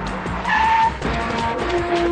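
A police jeep's tyres squeal briefly about half a second in as it brakes to a stop, the film's skid sound effect. Background music with sustained notes comes in after it.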